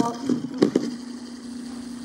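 Boxer toy robot's small electric motors running with a steady hum, with a few clicks and knocks about half a second in as it is handled.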